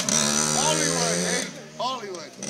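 Small dirt bike engine running at steady revs. Its sound drops away about one and a half seconds in as the bike rides off.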